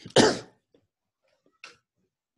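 A person coughs once, a short sharp burst, followed by a faint brief breath-like sound near the end.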